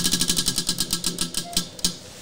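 Prize wheel's pointer flapper clicking against the pegs as the wheel spins down: rapid ticking that slows steadily and stops near the end.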